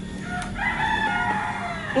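A rooster crowing once, one long call of about a second and a half that begins about half a second in.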